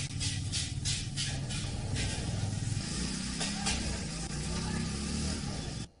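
Street sound of a vehicle engine running low and steady, with faint voices in the background and a series of short sharp ticks in the first two seconds; it cuts off just before the end.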